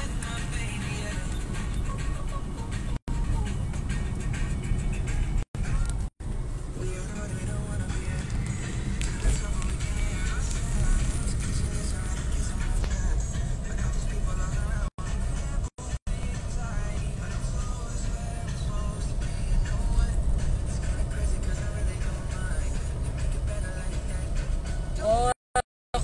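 Low, steady road and engine rumble of a car heard from inside the cabin, with music and voices playing faintly over it. The sound cuts out completely for a split second several times, around 3, 6, 15–16 and 25 seconds in.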